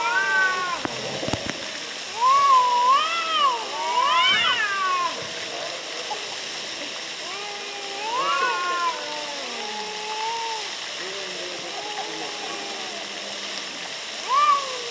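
Two domestic cats yowling at each other in a territorial standoff: long, wavering yowls that rise and fall in pitch, loudest in the first five seconds, then quieter, lower drawn-out growling yowls.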